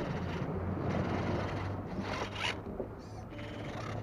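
Axial Capra radio-controlled rock crawler with a shaft drive working over rock: a whirring electric drivetrain and tyres scraping and grinding on stone, in uneven bursts with a brief rising whine about two seconds in.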